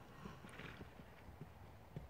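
Faint hoofbeats of horses trotting on pasture grass: irregular dull thuds, with a brief breathy noise about half a second in and a sharper thud at the end.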